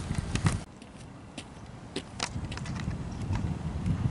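Low wind rumble and handling noise on a handheld camera microphone, dropping away about half a second in to quiet outdoor ambience broken by scattered sharp clicks.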